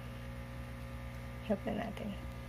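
Steady low electrical hum, with one short sound about a second and a half in.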